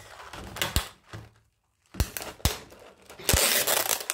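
Ice cubes and a plastic container being handled: a few sharp knocks, then ice cubes clattering and rattling in the plastic container near the end.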